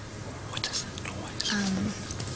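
A quiet pause with a few small clicks, then a brief, low murmur of a voice near the end.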